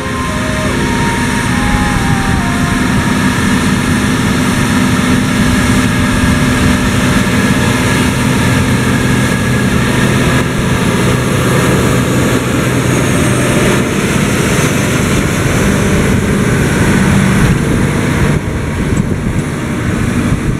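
Case IH STX 620 Quadtrac tracked tractor's diesel engine running steadily under load as it pulls a six-furrow plough.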